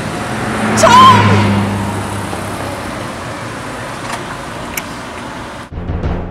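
A car drives past. Its engine and tyre noise are loudest about a second in and fade away over the next few seconds, with a woman's brief shout as it passes. The sound cuts off just before the end.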